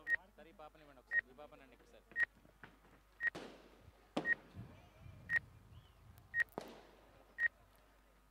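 A short, high electronic beep repeating at a steady pace of about one a second, eight times, over faint voices.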